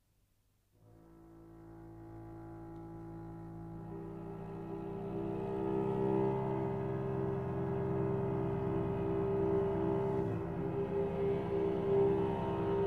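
Cello and double bass entering softly about a second in, playing long sustained low notes together that grow steadily louder.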